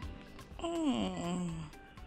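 A voice gives one long moan, about a second long, that falls in pitch and then holds low, over quiet background music.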